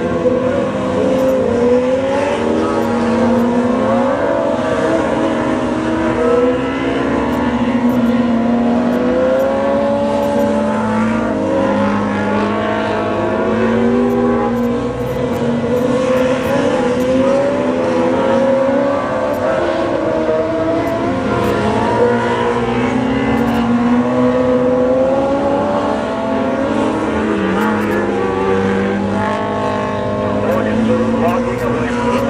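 Several dwarf cars, small motorcycle-engined race cars, racing on a dirt oval: many engines overlap, each rising and falling in pitch as the drivers get on and off the throttle through the turns.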